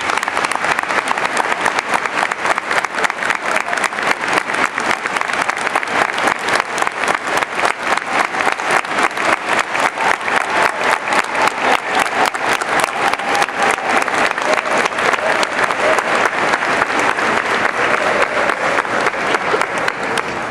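Large audience applauding, a dense, steady clatter of many hands clapping.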